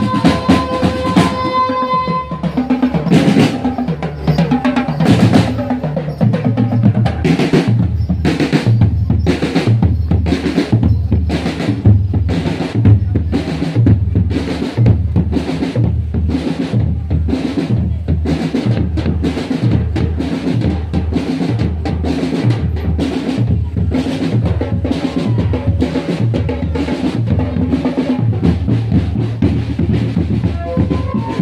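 Marching drum band of bass drums and snare drums playing a steady, even beat. A held wind-instrument note sounds over the drums in the first two seconds.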